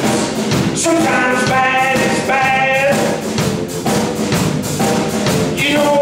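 A live blues band playing, with drums and bass under a lead line of long held notes.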